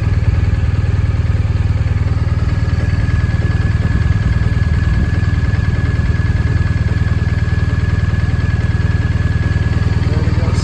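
A BMW R1250RT's boxer-twin engine idling steadily with an even low pulse. A thin, steady high whine comes in about three seconds in.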